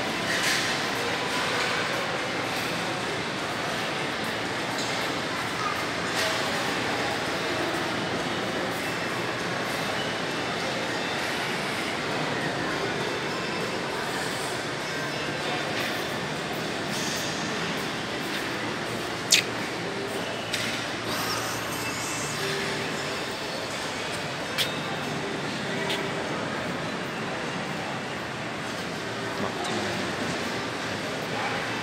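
Background noise of a large, echoing airport terminal hall: a steady wash of distant voices and machinery hum. About two-thirds of the way through, a few sharp knocks stand out, the first the loudest.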